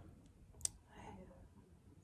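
A single sharp click a little over half a second in, against faint breathy whispering.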